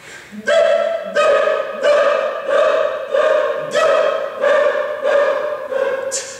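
Men's choir singing a vocal exercise: about nine short, separate notes on one unchanging pitch, roughly one and a half notes a second.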